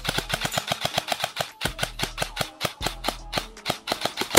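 Airsoft electric gun firing rapid full-auto bursts, a fast even string of sharp clacks of roughly ten or more shots a second with short breaks between bursts.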